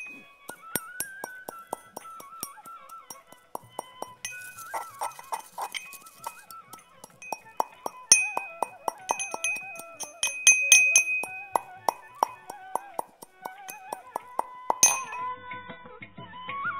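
Pestle striking a small steel mortar while pounding bael leaves and dry spices into powder: a steady run of sharp metallic clinks, about two to three a second, over background instrumental music.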